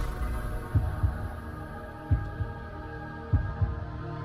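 Logo-intro sound design: deep paired thumps about every 1.3 seconds, like a slow heartbeat, over a steady humming drone.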